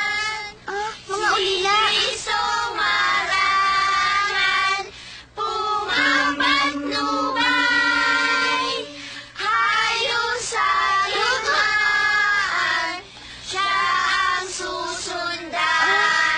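A group of children singing together as a choir. They sing in phrases with brief pauses between them, with some long held notes near the middle.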